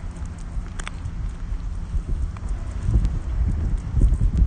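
Low, uneven rumble of wind and handling noise on a phone microphone carried by someone walking, growing louder about three seconds in, with a few light clicks.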